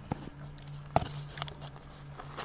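Handling noise from a hand right against the recording phone: a few sharp clicks and light rubbing, the loudest click about a second in, over a steady low hum.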